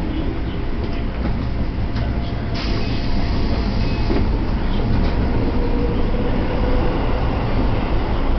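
Electric commuter train heard from inside as it runs into a station and slows: a steady low rumble of wheels and running gear, with a burst of hiss lasting about a second and a half about three seconds in.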